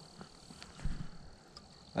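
A steady, high insect trill, cricket-like, with a few faint clicks and a dull thump about a second in.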